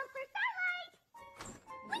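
Cartoon soundtrack: a short wordless voice sound from a character, a brief gap, then background music, with a character starting to speak near the end.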